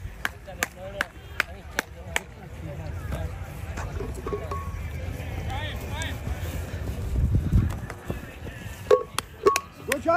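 A spectator clapping steadily, about two and a half claps a second, for the first two seconds, then faint distant shouts from players over wind rumbling on the microphone, with a few more sharp claps near the end.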